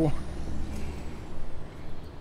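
Street traffic: a motor vehicle passing on the road, a steady rumbling noise with a faint high whine that rises and falls.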